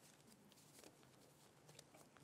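Near silence: quiet room tone with a few faint clicks.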